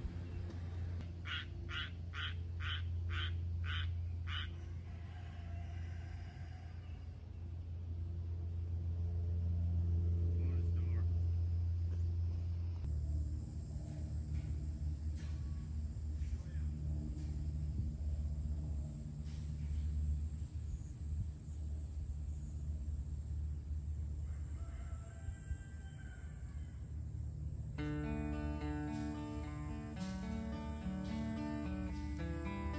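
Steady low rumble with a quick run of seven evenly spaced high chirps about a second in. Guitar music starts near the end.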